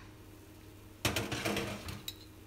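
Glass pan lid with a metal rim lifted off a mini martabak mould pan and set down, a clattering rattle of glass and metal lasting just under a second, starting about a second in. A faint steady hum lies underneath.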